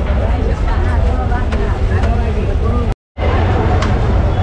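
Busy street ambience: a steady low traffic rumble with indistinct voices chattering over it. The sound cuts out completely for a moment about three seconds in, then resumes.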